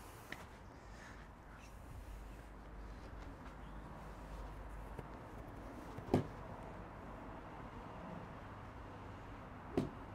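A single practice swing of a golf iron, a short swish through the air that drops in pitch, about six seconds in, against faint open-air background.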